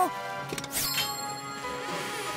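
Cartoon sound effects of a padlock being unlocked, a few small clicks about half a second in, then a quick falling swish and a held music chord as the treasure chest lid opens.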